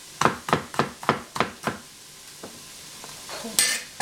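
Chinese cleaver slicing a red capsicum on a plastic cutting board: six quick knife strokes, about three a second, that stop about halfway through. A brief scrape follows near the end.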